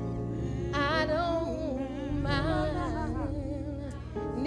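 Gospel music: a voice singing with heavy vibrato over sustained keyboard chords.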